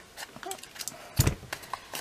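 Crop-A-Dile hole punch at work: a few light clicks, then one louder clunk a little over a second in as it punches through four thicknesses of cardstock.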